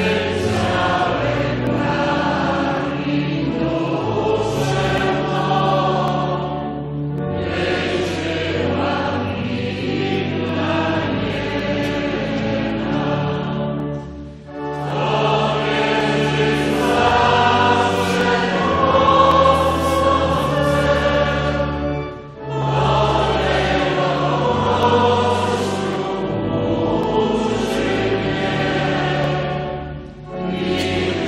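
A choir singing a church hymn in long, sustained phrases over steady low accompaniment, with short breaks between phrases about fourteen and twenty-two seconds in.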